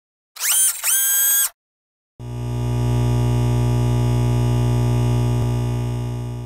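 Synthesized intro sound effects: two short rising electronic tones, then a long, steady low electronic drone that begins to fade near the end.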